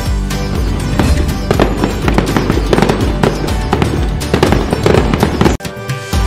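Fireworks crackling in quick, irregular strikes over steady background music. Both cut off suddenly for a moment near the end.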